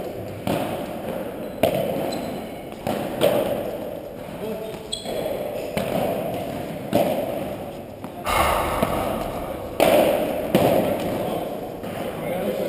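Padel rally: a padel ball hit by paddles and bouncing off the court and walls, about a dozen sharp hits roughly a second apart, each echoing in the hall. People talk in the background.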